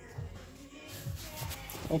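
Rustling and small knocks of a phone being handled and moved around, with a soft, irregular rumble and a rise in rustle about halfway through.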